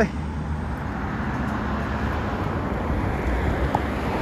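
Road traffic running steadily on a nearby road: an even rush of tyre noise with a low engine rumble.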